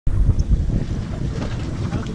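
Wind buffeting the microphone, a low, gusty rumble that is loudest in the first half second.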